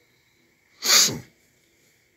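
A single short, loud sneeze about a second in.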